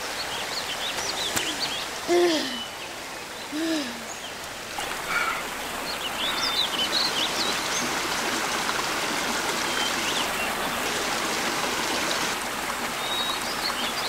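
Shallow forest stream running over rocks, fuller and louder from about five seconds in as a wounded foot is held and washed in the current. Birds chirp in short high calls, and two short low-pitched calls come about two and four seconds in.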